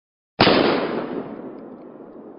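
A single sudden bang about half a second in, followed by a long echoing decay that fades away over the next few seconds.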